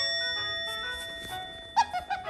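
A bell-like note in the background music, fading away, then near the end a short high squeak from an Asian small-clawed otter.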